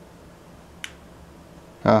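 A single short click of a button pressed on a small action camera, a little under a second in. A man's voice comes in near the end.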